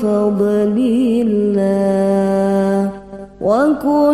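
Arabic devotional solawat singing: a voice holds a long, slightly wavering note, breaks off briefly near the end of the third second, then starts a new phrase that rises in pitch.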